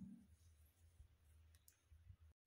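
Near silence: faint room hum with a few faint clicks.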